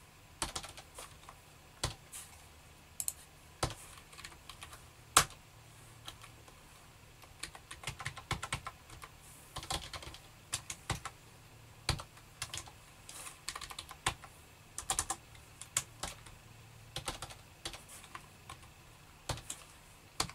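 Computer keyboard being typed on: irregular keystroke clicks, scattered at first and coming in quicker bursts from about seven seconds in.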